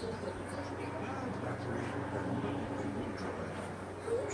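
Indistinct, muffled voices over a steady low hum.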